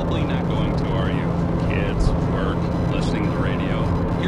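Steady low road and engine hum inside a moving car's cabin, with a voice from the car radio talking over it.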